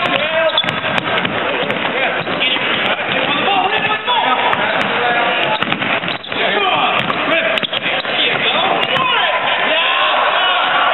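Basketball game in a gym: a ball bouncing on the hardwood court amid constant crowd and player voices, with scattered sharp thuds.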